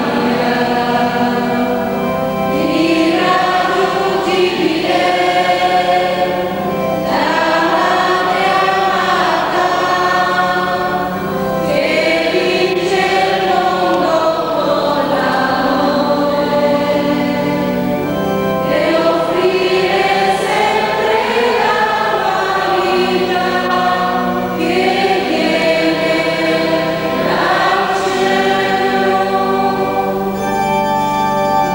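A church choir singing a hymn in phrases a few seconds long, over a sustained organ accompaniment.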